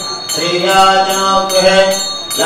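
A priest chanting Sanskrit puja mantras into a microphone in a long, drawn-out sing-song line, starting after a brief pause near the beginning.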